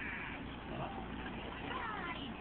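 Cartoon video soundtrack playing from a computer's speakers and picked up by the room microphone: short, high pitched sounds that slide up and down, over a steady hum.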